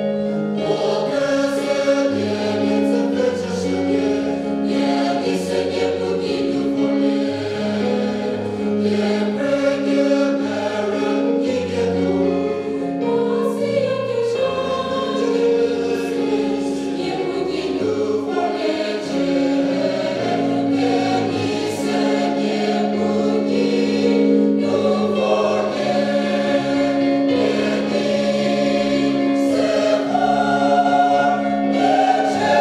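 Large mixed choir of women's and men's voices singing a sacred piece in harmony, with several parts sounding at once and notes held and changing every second or two.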